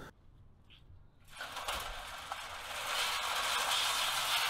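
Square-wheeled bicycle rolling along, its rubber-treaded chain tracks running around the steel square wheel frames with a steady scratching, scraping noise. It starts about a second and a half in and grows gradually louder.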